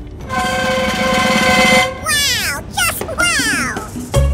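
Cartoon-style sound effects added in editing: a steady buzzy held tone lasting about a second and a half, then two descending whistle-like glides.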